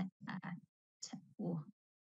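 A person's voice in short, broken fragments, each cut off sharply into silence, as over a remote video-call line; a brief "oh" comes just after the middle.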